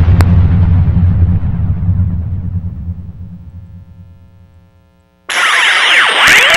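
Closing music of a broadcast ending on a low rumbling swell that fades out over about five seconds. Then, just over five seconds in, a loud electronic logo sound effect starts suddenly with many swooping, sweeping tones.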